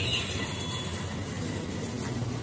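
A steady, even rumble of noise with no distinct knocks or clatter.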